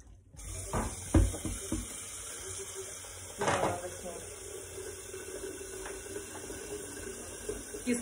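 Steady hiss of running or boiling water in a kitchen. A few knocks come about a second in, and a glass pot lid clinks as it is lifted about three and a half seconds in.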